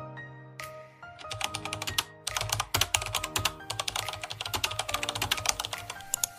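Rapid typing on a computer keyboard, a quick run of key clicks that starts about a second in and stops near the end, with background music underneath.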